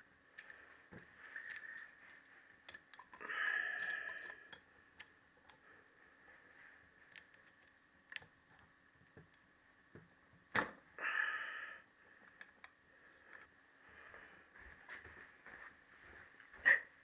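Faint small metallic clicks and taps as a valve spring compressor is worked onto a valve spring to fit the collets on a motorcycle cylinder head, with two short noisy sounds and one sharper click past the middle.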